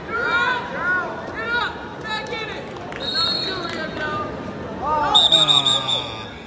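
Spectators and coaches shouting over a wrestling bout. Near the end a referee's whistle blows in a rapid string of short high blasts, stopping the match.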